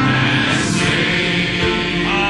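Music: a choir singing a hymn, the voices holding long, steady notes.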